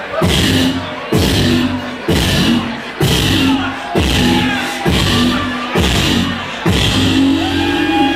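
Live hip-hop beat played loud, a heavy kick with sustained bass striking a little under once a second, with the crowd underneath.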